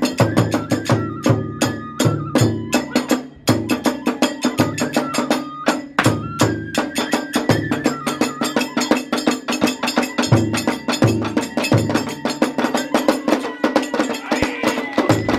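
Live Hiroshima kagura hayashi: a large barrel drum beaten in a fast, steady rhythm with small hand cymbals clashing on the strokes, under a high bamboo flute melody.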